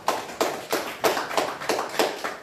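A person clapping hands close to a microphone, a steady run of sharp claps about three a second.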